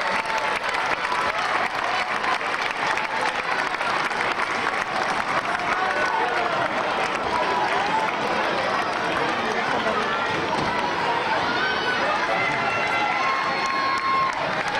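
Crowd of spectators cheering and chattering, many voices at once with no single speaker standing out.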